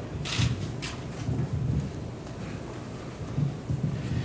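Handheld microphone being passed and gripped: handling noise, a low rumble and rustle with two short knocks in the first second.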